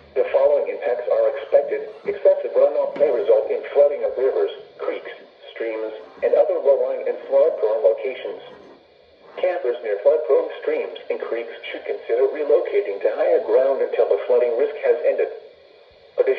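NOAA Weather Radio broadcast voice reading the flood watch statement through the small speaker of a Midland weather alert radio, with a thin sound and no highs. It pauses briefly about nine seconds in, then goes on.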